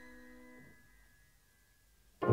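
The last notes of a piano phrase ringing on and dying away into near silence.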